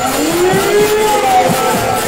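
Devotional music with singing: a voice holds one long note that slides up and then back down, over low drum strokes.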